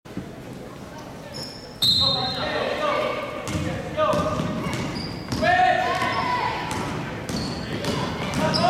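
Basketball game in an echoing gym: voices shouting from about two seconds in, with a ball bouncing and short high squeaks from sneakers on the hardwood floor.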